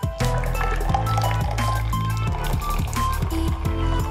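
Background music with a steady beat and bass line.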